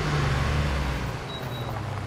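A vehicle's engine running close by with a steady low hum, over road traffic noise.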